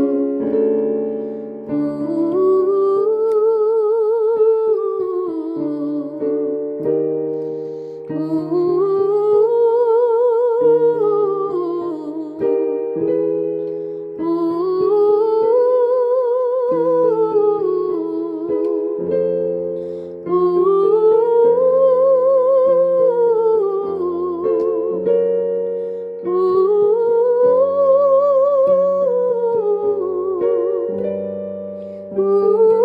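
A voice singing "ooh" up a five-note scale and back down, with vibrato on the top note, over held keyboard chords. The run comes five times, each time a little higher in pitch.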